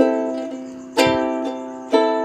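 Ukulele chords strummed about once a second, each chord left to ring and fade before the next.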